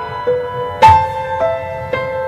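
Slow, tender instrumental music: a piano melody of single notes struck about every half second, each left ringing over the held notes beneath.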